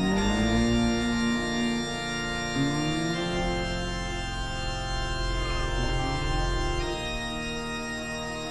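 A live rock band playing an instrumental passage, led by a sustained organ-like keyboard sound. Held notes slide upward near the start and again about two and a half seconds in.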